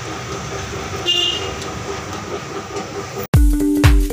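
Steady background noise with a short high tone about a second in; electronic music with a heavy bass beat cuts in near the end.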